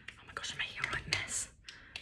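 A woman's soft, breathy whispering under her breath, with a few small clicks.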